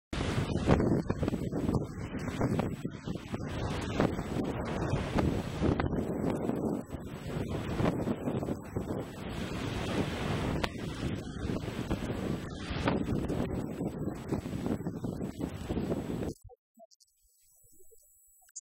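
Wind buffeting the microphone out on choppy open water, a loud, gusting noise that rises and falls, with the water heard under it. It cuts off suddenly about sixteen seconds in.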